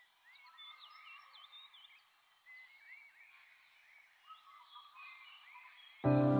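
Faint birds chirping: a scatter of short, quick chirps that rise and fall, heard against near silence.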